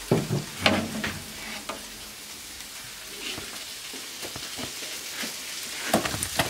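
Hot duck fat and drippings sizzling in a metal oven roasting tray while a utensil scrapes and clinks against the tray to gather the fat. The scrapes come in a cluster at the start and again near the end.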